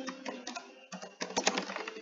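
Typing on a computer keyboard: a quick, uneven run of keystrokes as a word is typed out.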